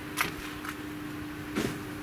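Steady low hum of an idling vehicle engine, with a single sharp click just after the start and a brief rustle near the end.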